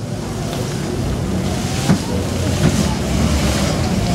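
Rally car engine running low and steady as a Škoda Favorit rally car rolls slowly up to the start ramp, with wind rumble on the microphone. There are two sharp knocks about two and two and a half seconds in.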